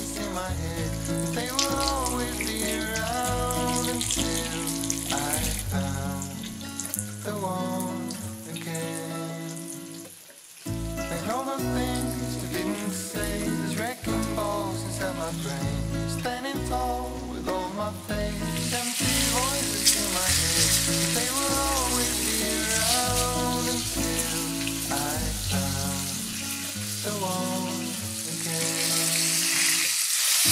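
Oil sizzling and spitting around flour- and egg-coated meat cutlets shallow-frying in a pan, over a pop song with singing. The sizzle grows markedly louder about two-thirds of the way through.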